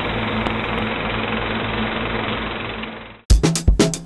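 A steady, fast mechanical rattle used as a transition sound effect, fading out about three seconds in. Music with sharp drum hits starts abruptly just after.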